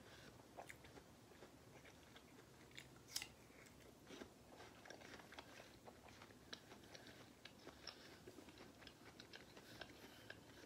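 Faint close-up chewing and biting of a juicy pear slice: small wet mouth clicks and crunches, with a louder crunch about three seconds in.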